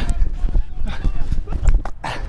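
Quick, irregular thudding footsteps of someone running on grass, heard close on a body-worn microphone, with knocks and rustle on the mic.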